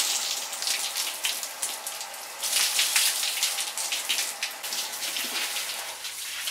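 Water from a garden hose spraying onto a horse and splashing on the wet floor of a wash stall: a steady splashing hiss that eases briefly about two seconds in, then picks up again.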